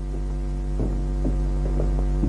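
Steady low electrical hum with a stack of buzzing overtones, the background noise of an old film soundtrack, with a few faint short sounds over it about a second in.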